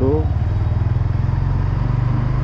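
Motorcycle engine running steadily at low road speed while being ridden: an even low hum with a fast, regular firing pulse.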